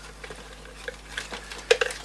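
Light clicks and taps from a plastic bottle of glazing medium and palette tools being handled and set down on a craft cutting mat. There are a few scattered small ticks, with the sharpest double click near the end.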